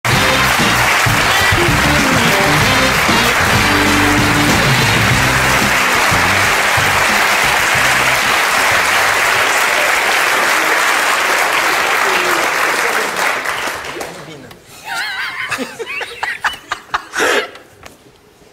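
Studio audience applauding over music. The applause fades out about thirteen seconds in, and a few voices and chuckles follow in the quieter end.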